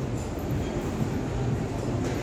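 Steady low rumble of city background noise, even throughout with no distinct events.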